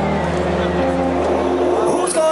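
Electronic intro music over a PA: a sustained low synth drone under held chords that change in steps, with no beat, and a rising sweep near the end as the build leads into the set.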